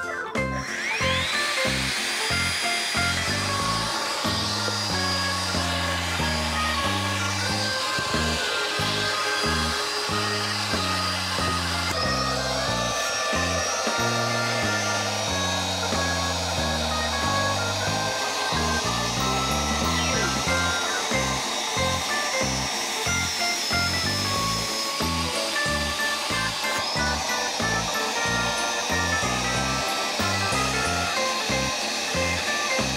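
Makita brushless cordless stick vacuum motor spinning up to a steady high whine, with its nozzle blocked by a plug for a suction-force test. It steps up in pitch about twelve seconds in, falls away near twenty-five seconds and spins up again. Background music with a steady beat plays underneath.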